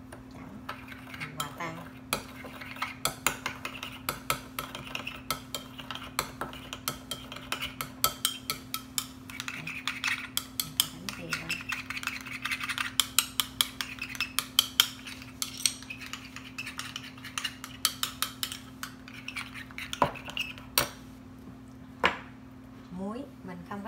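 Metal spoon stirring in a small glass bowl, clinking rapidly and repeatedly against the glass as it mixes instant yeast with warm water and sugar. There are a couple of louder knocks near the end, over a steady low hum.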